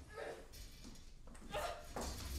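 Two short vocal sounds about a second and a half apart, over a steady low hum.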